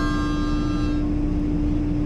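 A harmonica holding one chord, which fades out about a second in, over a steady shipboard machinery hum with a constant low tone.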